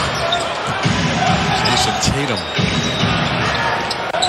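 A basketball being dribbled on a hardwood arena court, with the hall's crowd noise behind it and a TV commentator's voice over the top.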